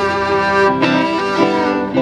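Violin playing an instrumental melody with long held notes and slides between them, over guitar accompaniment.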